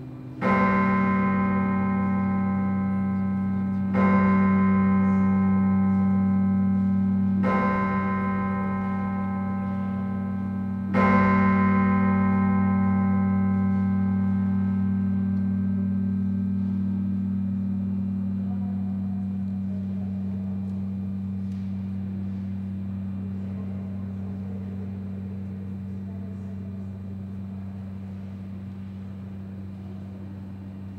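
A large cathedral bell struck four times, about three and a half seconds apart, each stroke ringing on with a deep hum and the last one fading slowly away.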